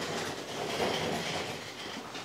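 Steady rustling and scraping from hands handling the plastic stand and back cover of an all-in-one computer.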